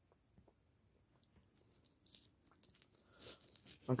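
Faint mouth sounds of sipping fizzy cola from a can: scattered small clicks and crackles that grow busier in the second half, with a short louder burst about three seconds in. A voice starts right at the end.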